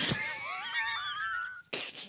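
Hard laughter that breaks into a high, wavering, wheezing squeal, cutting off about one and a half seconds in, then short breathy gasps.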